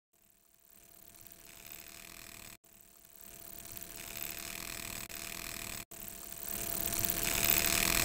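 End-screen sound effect: a hissing noise with faint steady tones beneath it, swelling gradually louder, broken twice by split-second gaps.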